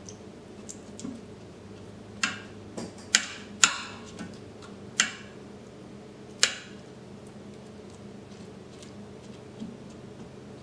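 Silicone-tipped kitchen tongs clicking against a stainless steel Instant Pot inner pot while moving chicken pieces in rice and liquid: about six sharp clicks between two and six and a half seconds in, with a few fainter taps around them.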